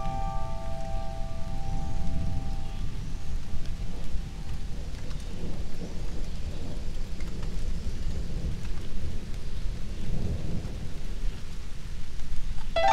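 Rain falling with a low, continuous rumble of thunder. A single musical note fades out over the first three seconds or so.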